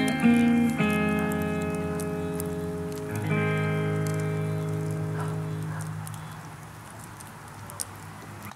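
Electric guitar through a small amp playing the song's closing chords: a few chords struck in the first seconds, the last one left to ring out and slowly fade. Faint crackling of a wood fire runs underneath.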